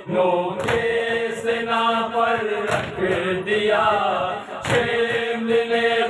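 A group of men chanting a Urdu noha (mourning lament) in unison, with the regular slap of hands beating on chests (matam) keeping the beat about once every 0.7 seconds.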